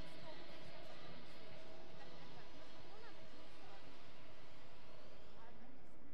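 Indistinct background voices and murmur of people in a large hall, with a few faint clicks.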